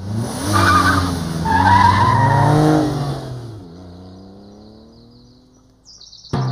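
A car's tyres screeching over the engine, loud for the first three seconds or so, then the engine's pitch rising steadily as it fades away.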